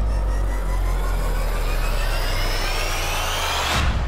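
Intro sting sound effect for a channel logo animation: a cinematic riser with a deep bass drone under many pitches sweeping steadily upward, swelling to a hit near the end.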